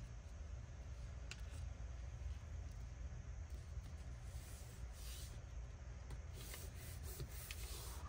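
Faint rustling and rubbing of paper as hands slide and press vellum and cardstock flat on a cutting mat, with a soft click about a second in and short rustles later on, over a low steady hum.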